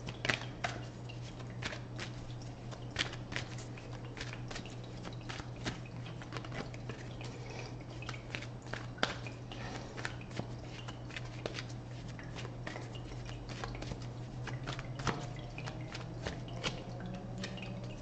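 A deck of tarot cards being shuffled by hand: an irregular run of small clicks and snaps of cards, over a low steady hum.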